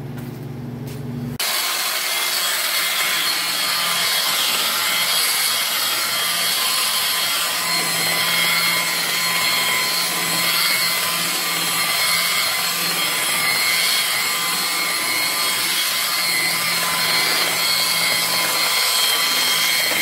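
DeWalt DW849 rotary buffer/polisher running steadily, its pad working over car paint: a continuous whir with faint steady whine tones. By the owner's account this buffer has a bearing noise. The sound comes in abruptly about a second and a half in.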